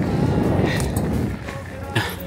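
Wind buffeting the microphone of a moving bicycle rider, a steady rumble that drops away about one and a half seconds in, with background music underneath.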